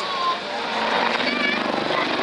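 Westland Lynx helicopter's rotor blades beating overhead during an aerobatic roll: a rapid, even pulsing that grows louder about halfway through.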